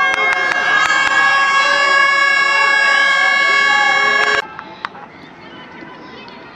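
A horn sounding one steady, unwavering note for about four and a half seconds, then cutting off suddenly, with a crowd's voices faint beneath it.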